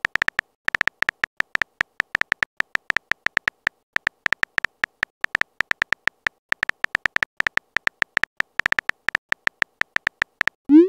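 Keyboard tap sound effect of a texting-story app as a message is typed out. Quick clicks with a small high ping, several a second in an uneven run, with brief pauses.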